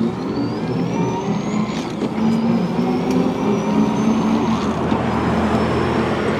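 Electric cargo trike accelerating hard from a standstill at full motor assist. The electric assist motor whines, rising in pitch over the first two seconds and then holding steady. Beneath it runs the drivetrain through a Rohloff hub gear, with road and wind noise; the rider says that when accelerating it sounds a bit like a truck.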